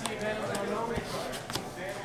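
Cards being put down on a rubber playmat over a table, with a dull thump about a second in and a lighter tap shortly after, under background voices.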